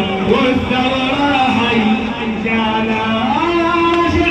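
A man singing, with long, wavering held notes; a rising slide leads into one long held note near the end.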